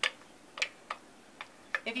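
Spoon clicking and tapping against the inside of a blender jar while scooping out wet paper pulp: about five short, sharp clicks, unevenly spaced.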